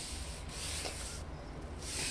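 Paintbrush bristles stroking across a painted surface close to the microphone: three short scratchy rubs, the middle one the longest.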